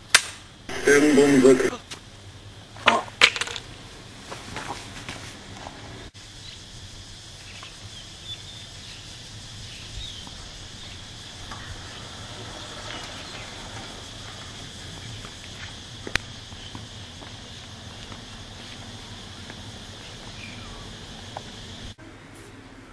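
A loud, brief vocal cry about a second in, followed by a couple of sharp hits. Then a steady outdoor background with a faint high, even hum.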